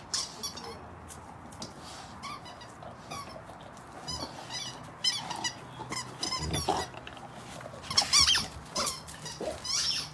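Dental chew toy squeaking again and again in short, high squeaks as a Rottweiler chews it, the loudest run of squeaks about eight seconds in.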